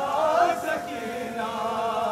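A group of men chanting a noha, a Shia mourning lament, together in unison; a phrase begins at the start and settles into one long held note with a wavering pitch in the second half.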